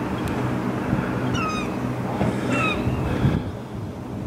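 Gulls calling in short cries that fall in pitch, three times, over a steady low engine hum.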